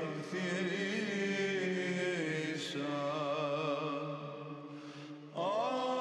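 Male monastic choir chanting a Greek Orthodox Byzantine Christmas hymn: a steady held drone (ison) under an ornamented, wavering melody. The voices fade briefly about five seconds in, then a new phrase begins.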